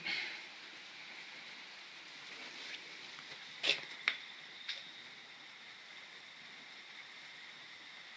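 Faint steady background hiss with three short clicks a little after the middle.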